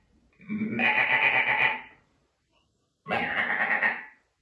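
Sheep bleating: two long bleats, the second starting about three seconds in.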